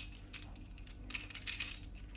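Wooden base-ten bars (Lubienska/Montessori ten-bars) clicking lightly against each other as they are handled and counted in the hands: a scatter of short, faint clicks.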